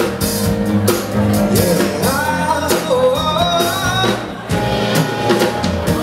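Live soul band playing: a man's singing voice over electric guitar and drum kit, with steady drum hits under the song.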